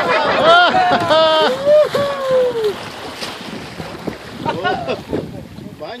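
Several people in a small open boat crying out in wordless surprise and delight, high shrieks and 'ooh' cries that arch up and fall away over the first three seconds, as a gray whale at the boat's side sprays them with its blow. Water washing against the boat and wind on the microphone carry on underneath.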